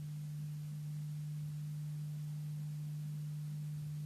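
A steady low hum: one pure, unchanging tone with nothing else heard over it.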